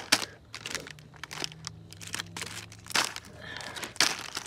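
Plastic snack wrappers crinkling as they are picked up and set down, with a few short sharp rustles, among them a Goldfish cracker bag.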